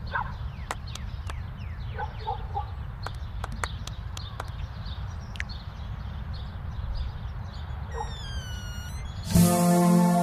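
Low rumble of wind on an action camera's microphone, with scattered small clicks and a few faint short calls in the distance. A pop song comes in loudly near the end.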